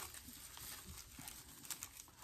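Faint handling noise of packaged craft supplies: a few light taps and clicks with soft rustling as the packs are picked up and moved.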